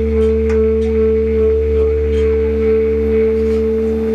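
Live free-jazz band (saxophone, drums, double bass) holding one steady droning note, with a few light ticks scattered over it.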